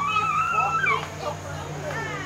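A child's high-pitched squeal, held for nearly a second and dropping at the end, among children playing and calling out.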